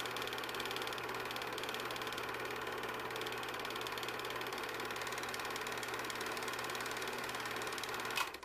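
A loud, steady buzz with a low hum and a very fast, even rattle in it, with no change in pitch or level.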